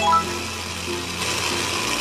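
Small battery motor of a Zuru toy hamster whirring steadily, its hiss growing stronger in the second second, under background music.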